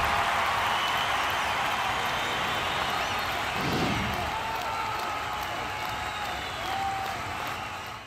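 Crowd cheering and applause, a steady roar with a low thump about four seconds in, fading out at the end.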